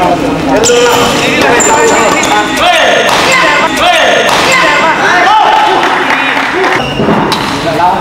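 Badminton doubles rally: rackets hitting and smashing the shuttlecock with sharp cracks, and players' shoes squeaking on the court mat as they move.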